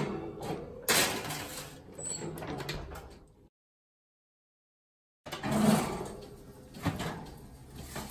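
A metal sheet pan of squash slides onto an oven rack and the oven door is shut. After a short silence, the oven door is opened and the pan is drawn out over the rack with a clatter.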